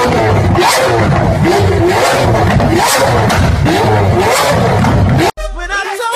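A sports car's engine revved in repeated loud blips, mixed with music, cut off suddenly about five seconds in.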